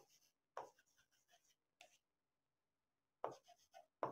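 A marker writing on a board: faint, short strokes in several separate bursts with pauses between.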